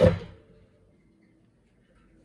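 A single sharp knock on a wooden tabletop as something is put down, ringing briefly, then quiet with a faint steady hum.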